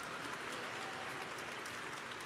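Large audience applauding: a steady, even patter of many hands, well below the level of the nearby speech.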